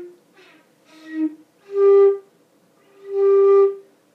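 Concert flute playing the low G: two short, soft notes, then two louder held notes, the last held about a second.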